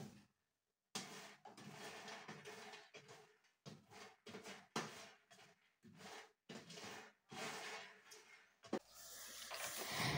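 A spatula stirring peanuts on a metal oven tray while they roast: faint, irregular scraping and rattling as the nuts are turned.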